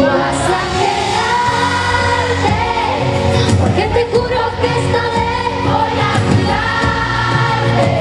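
Live pop ballad: a female singer holding long sung notes over full band backing, heard from within the concert crowd.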